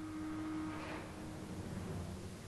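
A faint steady hum, a single low tone that fades away about two-thirds of the way through, over a light hiss.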